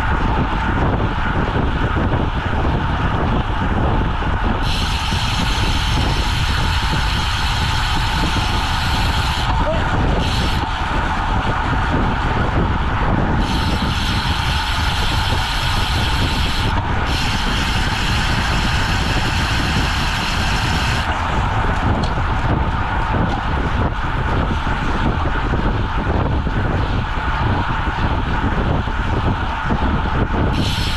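Wind rushing over the microphone of a bike-mounted camera on a road bike at about 25 mph: a loud, steady rush, with a brighter hiss that comes and goes several times.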